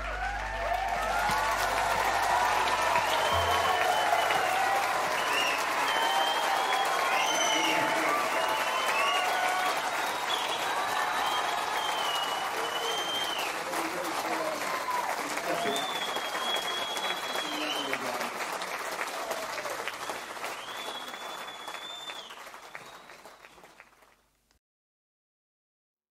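Concert audience applauding, cheering and whistling at the end of a song. A low held note dies away in the first few seconds, and the applause fades out near the end.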